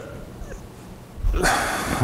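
A man's short, noisy breath, lasting under a second, near the end of a quiet pause.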